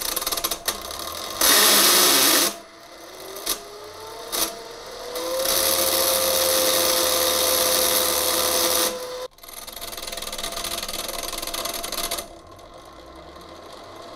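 A hand-held RC brushless motor, pressed onto the shaft of a Safir-5 turbojet as a makeshift starter, buzzing and rattling as it struggles to catch and spin the rotor. A whine rises in pitch and holds as the rotor turns faster. It cuts off suddenly about nine seconds in, and a shorter, quieter burst follows.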